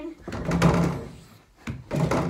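A dunk on a mini basketball hoop mounted on a door: a noisy thump and rattle in the first second, then two quick knocks of the ball hitting the hoop about three quarters of the way in.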